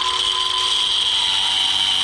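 Angle grinder with a cut-off disc running steadily and cutting through steel exhaust bolts at a header flange, with a steady high whine.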